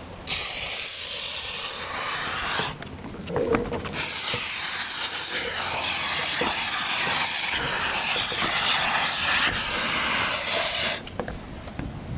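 Two-part spray foam gun hissing as it shoots maximum-expansion foam into the roof ridge seam. It comes in two bursts: a short one of about two seconds, a brief pause, then a long one of about seven seconds that cuts off near the end.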